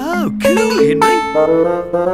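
Electric guitar playing a short melody of sustained single notes, with a swooping pitch bend near the start.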